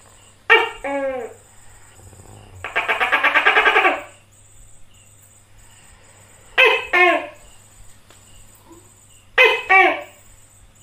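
Tokay gecko calling: a loud two-syllable "to-kek" call with falling pitch about half a second in, a rapid chattering rattle of about a second around three seconds in, then two more "to-kek" calls near seven seconds and at the very end.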